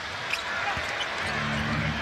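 Basketball being dribbled on a hardwood court over steady arena crowd noise. A low steady hum comes in a little past a second in.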